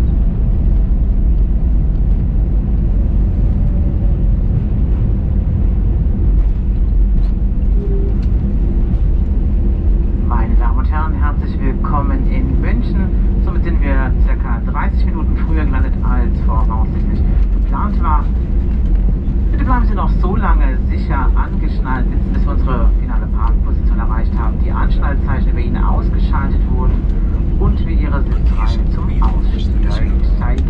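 Cabin noise inside an Airbus A320-200 rolling along the runway after landing: a loud, steady low rumble. Indistinct voices join it from about ten seconds in.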